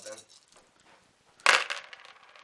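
A handful of dice thrown into a plastic tub, landing with a sudden loud clatter about one and a half seconds in and rattling to a stop.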